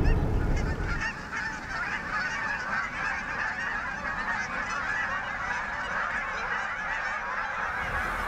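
A large flock of Canada geese calling all at once, a dense steady din of many overlapping honks.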